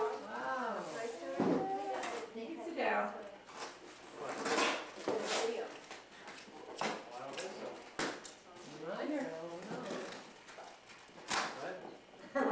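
Family voices talking quietly in the room, with rustling of packaging and wrapping paper and a few sharp clicks or knocks.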